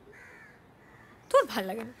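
Faint bird calls in the background, then a woman's voice says a couple of words near the end.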